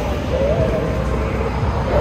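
Several people singing outdoors in held, slowly wavering notes, over a low steady rumble.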